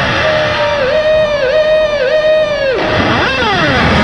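Electric guitar holding one long note that dips sharply in pitch and comes back three times, then breaks off into a quick slide up and back down near the end.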